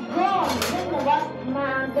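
A voice speaking over background music with a low steady hum beneath it.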